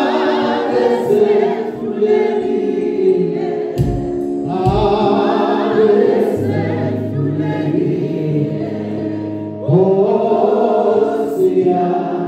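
A male gospel vocal group sings: a lead singer with backing voices in harmony. New phrases come in about four and a half and ten seconds in.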